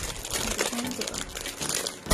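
Plastic wrapping crinkling and rustling as it is handled, with quick irregular crackles.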